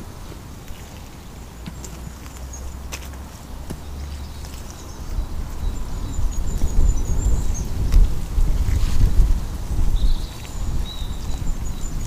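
Wind buffeting the microphone, a low rumble that grows gustier and louder from about halfway in. Small birds chirp faintly in the background, and there are a couple of light knocks.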